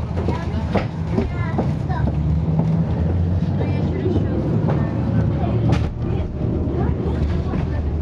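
Inside the passenger cabin of a moving city transit vehicle: a steady low rumble of running, with scattered clicks and rattles, one sharp knock a little before the end, and faint voices in the background.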